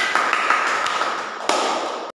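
Small audience applauding: many overlapping hand claps.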